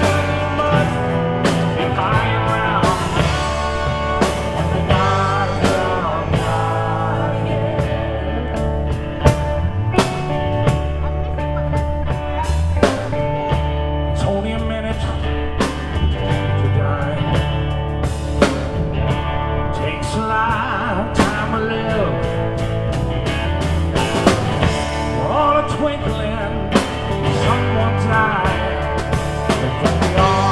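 A live rock band playing a southern/country rock song, with strummed acoustic guitar, electric guitar and a drum kit keeping a steady beat.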